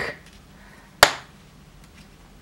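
A single sharp click about a second in, the metal tips of circular knitting needles knocking together as the work is handled, over faint room tone.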